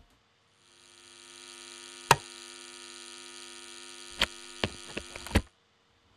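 A steady electronic hum of many stacked tones fades in from the promo video's soundtrack. A sharp click comes about two seconds in and a quick run of clicks near the end, then the hum cuts off suddenly.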